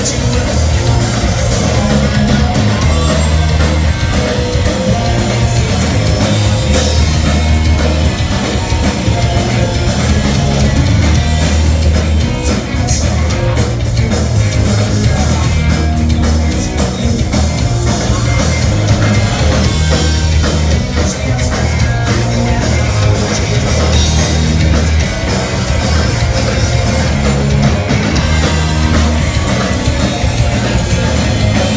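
Punk rock band playing live at full volume: distorted electric guitar, bass and drum kit, without a break.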